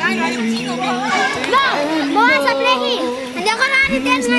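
Children and young people shouting and calling out to each other while playing football, with many high voices overlapping.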